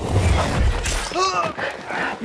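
A heavy thud and scuffle as two men slam down together on a dirt floor. From about a second in, breathy pained grunts and groans follow.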